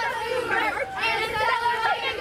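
A group of young girls chattering, several high-pitched voices talking over one another with no break.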